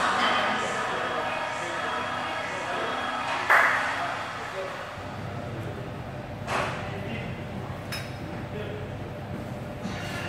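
Gym ambience: background voices and music over steady room noise, with a sharp metallic clank about a third of the way in and two lighter clinks later, one ringing briefly.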